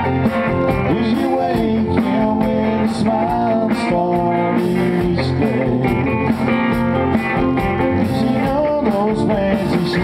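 Live country band playing, led by electric guitar with acoustic guitar underneath, at a steady level with bending guitar notes.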